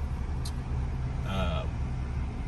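2022 Nissan Frontier's 3.8-litre V6 idling, a steady low hum heard inside the cab, with a small tick about half a second in.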